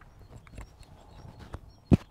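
A faint outdoor background with a few soft knocks, then one loud, dull thump near the end, along with faint short high chirps.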